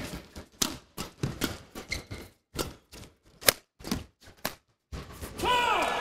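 Badminton doubles rally: rackets striking the shuttlecock in a quick, irregular exchange, two or three hits a second. Near the end comes a louder burst of squealing, likely shoe squeaks on the court.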